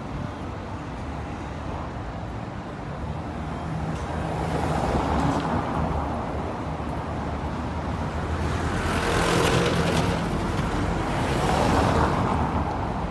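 Street traffic: car engines running low and cars passing over the cobblestones, with louder passes about four seconds in and again near the end, the last as a taxi goes by close.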